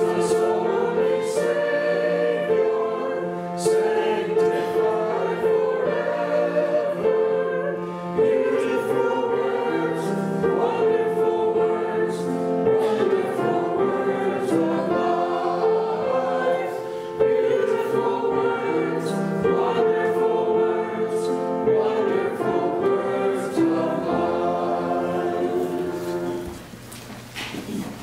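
Church congregation singing a hymn together from hymnals, one sustained note after another at an even, full level; the last verse ends right at the close.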